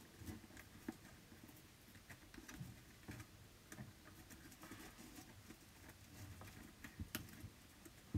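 Near silence with faint, scattered light ticks and rustles of card stock being handled by fingers, as die-cut paper flowers and leaves are lifted away from the edge of a card.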